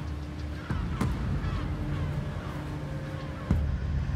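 Steady low drone of a fishing boat's engine, broken by three sharp knocks, the clearest about a second in and another near the end.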